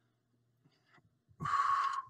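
A man's short, forceful breath out, about a second and a half in, after near silence, as he works through a dumbbell bicep curl.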